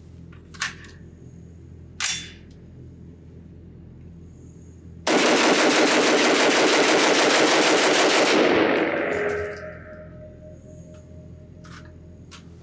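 AR-15 pistol fired semi-automatically in a fast string of shots lasting about four seconds, starting about five seconds in. The shots run together and echo in an indoor range. Two sharp clicks come before it.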